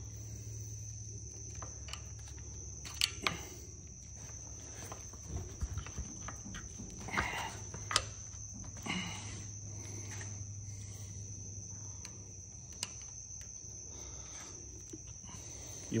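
Scattered faint clicks and scrapes of screwdrivers working a rubber oil seal over a propeller flange, over a steady low hum and a steady high-pitched whine.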